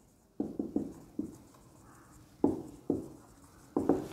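Marker pen writing on a whiteboard: short separate strokes in a few quick bunches with pauses between, as a word is written out.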